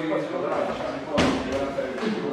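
People talking in a large, echoing hall, with one sharp smack about a second in.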